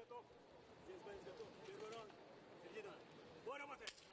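Faint, distant voices calling out in short phrases over low background noise.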